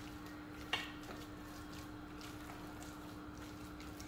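A spatula mixing spiced chicken mince in a glass bowl: faint stirring and squishing, with one sharp tap against the glass about three-quarters of a second in, over a faint steady hum.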